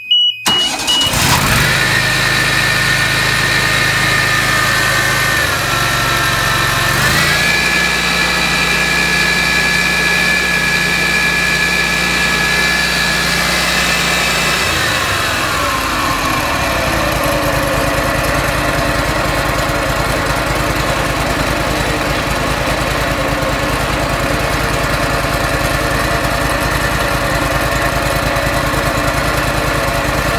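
Walker zero-turn mower's OHV engine starting about a second in and running, run to circulate fresh hydraulic fluid through the hydrostatic transmissions. The engine speed dips briefly and picks back up, then drops to a lower steady idle about halfway through.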